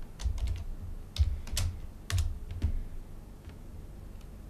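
Computer keyboard keystrokes: about seven separate key presses over the first three seconds, typing a short command and pressing Enter, then quiet.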